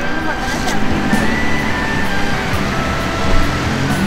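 Background music with long held notes that step from one pitch to the next, over the low rumble of road traffic.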